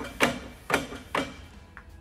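Three sharp clunks about half a second apart from an Oreca LMP2 rear hub and brake disc rocked by hand against the gearbox locked in first gear: the driveline taking up its play.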